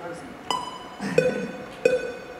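Three single plucked-sounding keyboard notes, each struck sharply and left to die away, about two-thirds of a second apart.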